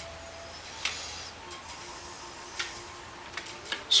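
A few faint, short clicks and taps of hands handling a plastic 1/8-scale RC buggy chassis and its throttle linkage, over a steady low hum.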